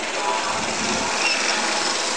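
Outboard motor of a small flat-bottomed boat running as the boat gets under way, with voices in the background.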